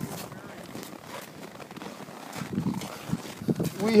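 Gusting wind on the microphone mixed with footsteps crunching in deep snow, with faint voices in the background.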